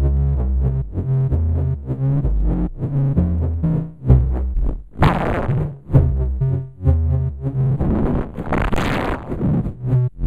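Eurorack modular synthesizer: three oscillators (Malekko Wiard Oscillator, Anti-Osc, Tiptop Z3000) mixed and cross-modulated through a 4ms VCA Matrix, playing a clocked, stepped sequence of short low notes, about two a second. About five seconds in, and again near nine seconds, the tone swells bright and buzzy.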